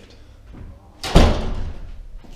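A single heavy thud about a second in, dying away over under a second.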